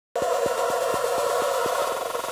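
A harsh, glitchy electronic buzz cuts in abruptly just after the start, with sharp clicks about four times a second that stop shortly before the end.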